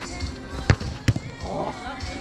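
Two sharp thuds of a football being struck on an artificial-turf pitch, a little under half a second apart, the second followed by a couple of small clicks.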